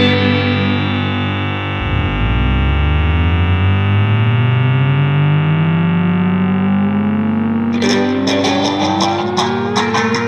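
Instrumental rock passage: distorted electric guitar holds a sustained chord while one long tone slowly rises in pitch, and the drums come back in with repeated hits about eight seconds in.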